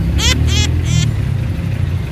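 Steady low rumble of heavy city street traffic, engines running close by. In the first second come four short high-pitched calls that rise and fall.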